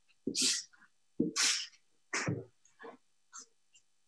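Felt-tip marker drawn across a paper drawing pad in about five short strokes, each under half a second, the first three louder than the last two.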